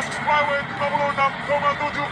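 Indistinct, high-pitched commentary voice talking continuously over a steady bed of arena crowd noise.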